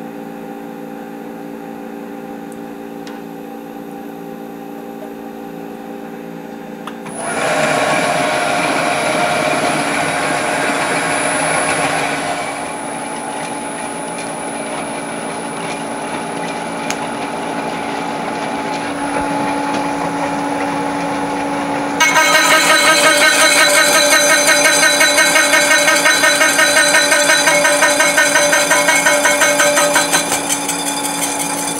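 Milling machine running with a slitting saw on the spindle, and from about seven seconds in the hiss and high whistle of compressed air blowing from a flexible nozzle line onto the work. About 22 seconds in, the saw bites into the encoder disc to cut a notch: a louder, rattling cutting sound with a fast, even ripple.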